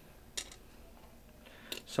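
A single small, sharp click about half a second in, as a glass rod dot is dropped onto the glass frit in a bisque tile mould, then a fainter click near the end.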